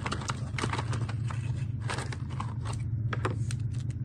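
Cardboard box and a wooden toy subway car being handled: irregular taps, clicks and scrapes as the car is slid out of its packaging, over a steady low hum.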